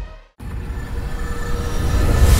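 Electronic outro music fades out into a brief silence, then a low, rumbling swell with a few held tones starts and builds: a cinematic logo-reveal sound effect.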